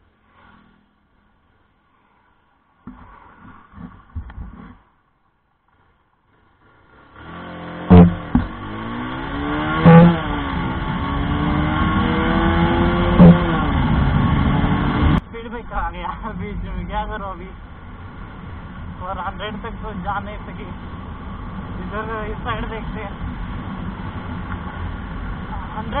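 Bajaj Pulsar 220F motorcycle's single-cylinder engine under hard acceleration, its pitch climbing and dropping back as it goes up through the gears, with gusts of wind noise on the helmet camera. About halfway through, the throttle is shut suddenly for a speed breaker, cutting the 0–100 km/h run short, and the engine drops to a lower, steadier running sound. The first several seconds are mostly quiet.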